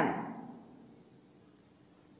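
The last of a spoken word fading out in the first half second, then near silence.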